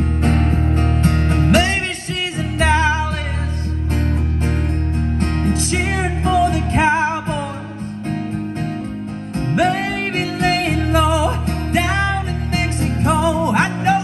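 Live country song played on guitar and bass, with a wavering lead melody on top; the low bass notes drop out briefly about two seconds in and again in the middle.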